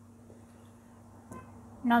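Faint stirring of rice and potato pieces in water in a nonstick pot with a spoon, with one brief scrape about a second and a half in, over a low steady hum. A woman starts speaking at the very end.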